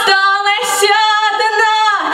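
A young woman singing solo into a handheld microphone, holding long notes with a short break between phrases.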